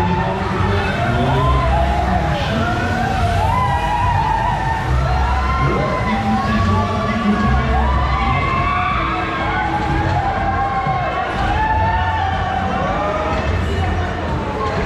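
Riders screaming on a spinning thrill ride: many overlapping screams that rise and fall, over loud fairground music with a heavy thumping bass.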